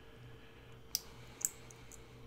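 A few small metallic clicks from a black binder clip being handled and fitted onto a glued notebook stack, the two sharpest about a second and a second and a half in, over a faint steady hum.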